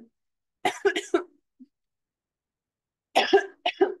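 A woman coughing in two short fits of a few quick coughs each, about a second in and again near the end.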